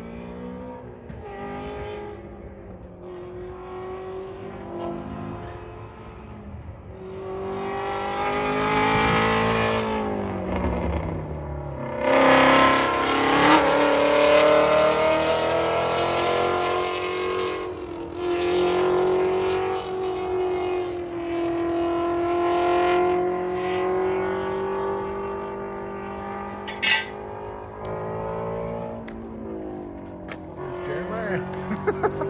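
Race car engines running hard around the circuit, their pitch climbing and dropping over and over as they accelerate and change gear, loudest from about twelve seconds in. A single sharp pop comes near the end.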